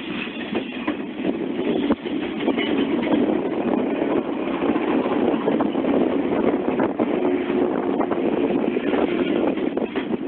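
Electric multiple-unit train running past at close range: a steady rumble with a few sharp clacks of the wheels over rail joints.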